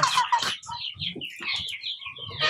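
A flock of Rhode Island Red hens clucking and giving short, high calls, some falling in pitch, while they feed.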